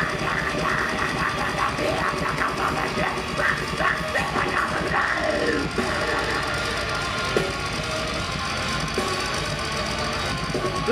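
Live deathcore band playing at full volume: heavily distorted guitars and fast drums, with the vocalist's growled vocals over them, one dense and unbroken wall of sound.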